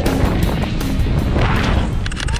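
Background music track with a steady beat.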